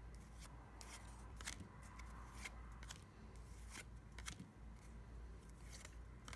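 Stack of baseball trading cards being flipped through by hand, each card slid off the front of the stack with a faint slide and soft click, repeating every second or so.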